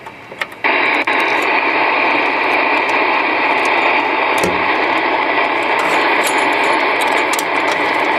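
Galaxy DX2547 CB radio's speaker hissing with steady receiver static, starting abruptly about half a second in after a few small clicks as the external antenna is plugged in. No station comes through: the band is quiet.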